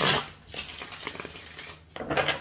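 A deck of tarot cards being shuffled by hand: a loud rustle of cards at the start, then softer shuffling.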